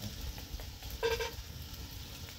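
Food frying in a pan over an open wood fire, with a short pitched sound lasting under half a second about a second in.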